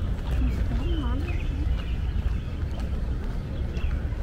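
Outdoor park ambience: a steady low rumble with short chirps of birds in the trees. A person's voice rises and falls in pitch for about a second near the start, with no clear words.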